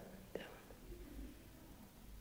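Faint, soft murmured speech from a woman's voice in a quiet room, with one short sound about a third of a second in.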